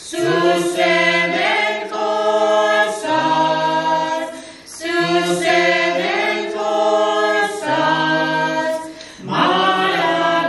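A small mixed vocal group of five singing a hymn a cappella in harmony, in long held phrases with short breaths about four and a half and nine seconds in.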